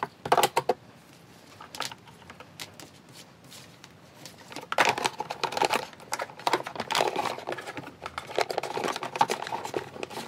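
Handling noise from a Scheppach HD2P 1250 W vacuum cleaner's plastic housing and its coiled power cord. A few sharp plastic clicks come near the start, then a longer stretch of dense clicking, rattling and rustling in the second half as hands move the cord in its compartment.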